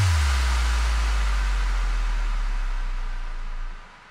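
A deep, steady electronic bass tone under a wash of white noise, fading out shortly before the end. It is the transition effect between two tracks of a non-stop DJ remix mix.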